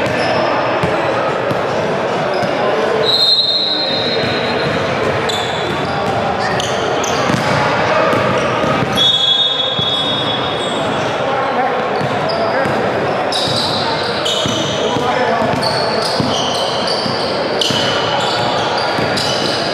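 Indoor basketball game in a large, echoing gym: players' voices overlapping, the ball bouncing on the hardwood floor, and short high sneaker squeaks that come more often in the last few seconds.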